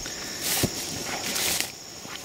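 Footsteps swishing through cut, dry grass, with a soft knock about half a second in. A steady high insect drone sits underneath.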